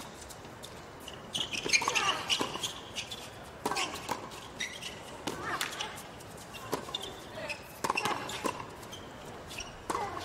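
Tennis ball struck back and forth in a doubles rally, with sharp racket hits about once a second and short vocal exclamations from the players.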